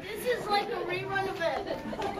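Chatter of several overlapping voices, children's among them.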